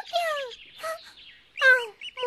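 A high-pitched cartoon character's voice giggling and exclaiming in three short calls that fall in pitch, the last and loudest near the end.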